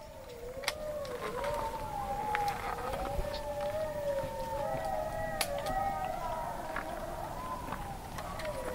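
A pack of wolves howling in chorus: several long, wavering howls overlap and rise and fall in pitch, swelling over the first second or two. It is a reply to induced howling, the survey method of broadcasting a howl to make wild wolves answer. A few sharp clicks sound over it.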